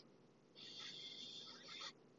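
A faint breath through the mouth, a soft hiss lasting a little over a second.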